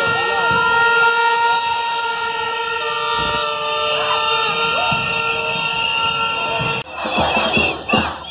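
A steady, unbroken horn note held over the voices of a marching crowd, with a second higher note joining about three seconds in. Both stop abruptly about seven seconds in, and loud crowd shouting follows.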